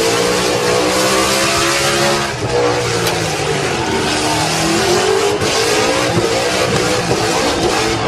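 Car doing a burnout: the engine held at high revs, its pitch rising and falling, over a loud, continuous tyre squeal.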